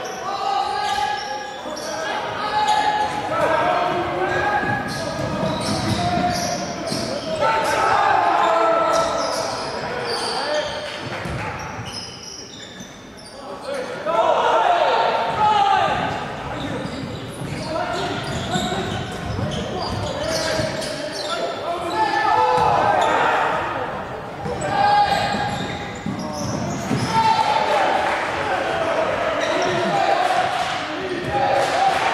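A basketball being dribbled on a hardwood gym floor, with repeated bounces, mixed with players and coaches calling out during live play in an echoing gym.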